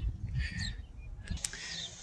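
Outdoor street ambience: a low steady rumble with a few faint bird chirps, and a single click about one and a half seconds in.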